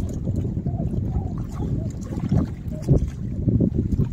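Wind buffeting the microphone in gusts, over lake water lapping against shore rocks.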